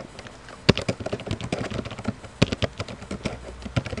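Typing on a computer keyboard: a quick, irregular run of key clicks, with a few sharper, louder strokes among them.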